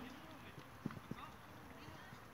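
Faint children's voices with two soft thumps, the first a little under a second in and the second just after it.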